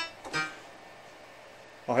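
Roland D-70 synthesizer's grand piano sample, heard through speakers: a single short note about a third of a second in that dies away quickly, then quiet room tone. The keys are being checked one by one because many of them are dead.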